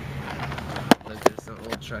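Steady low car engine and road hum inside the cabin. About a second in come two sharp knocks, a third of a second apart, as the handheld camera is swung round toward the windshield. A voice says a single word near the end.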